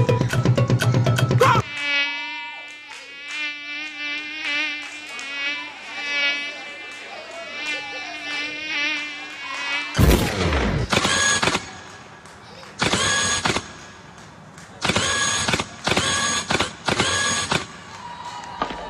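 Dance-routine backing track: the drum beat breaks off about two seconds in, and a wavering insect-like buzz plays over a low steady drone. About ten seconds in a sudden crash hits, followed by a string of short, loud electronic sound-effect bursts, each about a second long.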